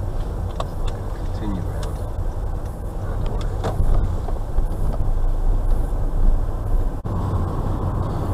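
Steady low engine and road rumble heard inside a car's cabin as it moves slowly through a turn. It breaks off for an instant near the end.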